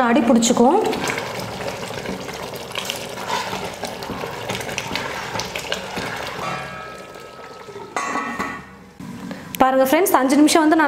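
A long ladle stirring soaked rice into boiling chicken gravy in a large stainless-steel pot: bubbling and sloshing liquid with scattered clinks and scrapes of the ladle on the steel. It grows quieter towards the end.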